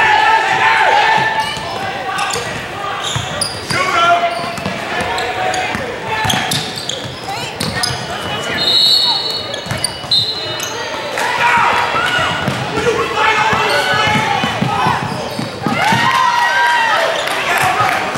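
Basketball game in a gym: a ball dribbling and bouncing on the hardwood court, with players and spectators shouting. A referee's whistle sounds twice, about halfway through.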